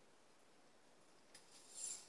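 Near silence, then about a second and a half in a faint click and a brief high rustle as loose steel strings of a Harley Benton TE-40 electric guitar are gathered and slid through the hand.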